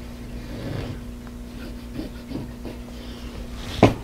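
Soft handling sounds of cotton fabric pieces being moved about on a wool pressing mat, over a steady low hum, with a single sharp click just before the end.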